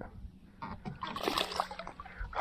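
Hooked speckled sea trout splashing at the water surface as it is reeled to the boat: a run of irregular splashes starting about half a second in.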